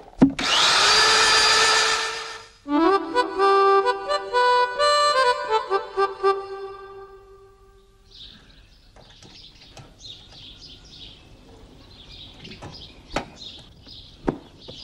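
An electric drill spins up and runs for about two seconds, then a short, lively accordion-like tune plays and fades out. After that there are faint bird chirps and a couple of sharp clicks.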